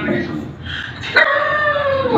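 A puppy gives one long, slightly falling whining yelp that starts suddenly about a second in, a play-fight cry.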